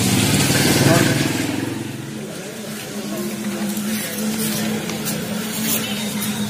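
A motor vehicle engine running steadily with a low hum, after a few words of speech in the first two seconds.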